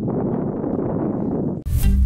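Wind buffeting the microphone as a steady low rumble. Near the end it cuts off abruptly and background music begins.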